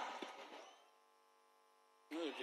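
Near silence in a pause between a speaker's phrases: the last word fades out in the first half-second, leaving only a faint steady hum.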